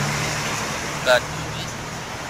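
Low, steady engine hum of nearby road traffic, fading about a second and a half in, with one short spoken word over it.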